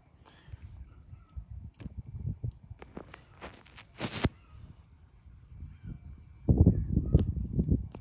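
Handling noise from a phone being held and moved against its microphone: low rubbing and rumbling with scattered knocks and clicks, a sharp click about four seconds in, and a louder stretch of rubbing from about six and a half seconds on.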